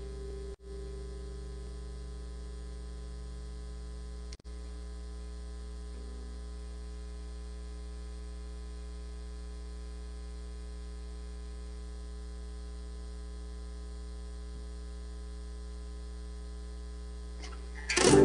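Steady electrical mains hum, a low buzz with a stack of even overtones, cutting out briefly twice near the start.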